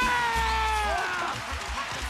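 Music with a steady low bass, over which one long, drawn-out pitched cry slides down in pitch and fades out about halfway through.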